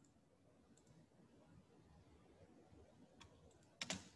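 Near silence with faint clicks from someone working at a computer: a few light clicks, then a sharper double click near the end.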